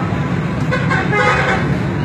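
Busy street traffic: a steady low engine rumble, with a louder stretch about a second in that includes a vehicle horn toot.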